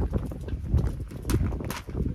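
Plastic potting-soil bag being handled as its cut top is pulled away, with crinkling and irregular low knocks and thumps.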